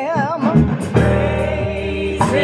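Gospel choir singing, one voice with wide vibrato leading near the start over sustained notes.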